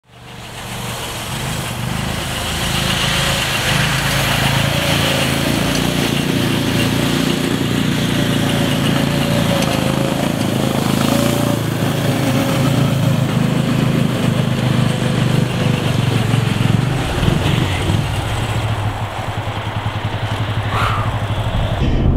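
Snowmobile engine running steadily as the machine rides through snow, fading in over the first couple of seconds. It turns lower and more pulsing in the last few seconds.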